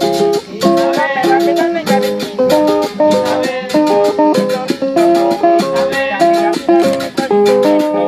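Acoustic guitars playing a Dominican son: a quick, rhythmic plucked melody over strummed chords, with steady sharp attacks keeping the beat.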